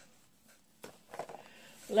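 Small cardboard gelatin boxes being handled and set down on a cluttered desk: a light tap a little under a second in, then soft handling noise.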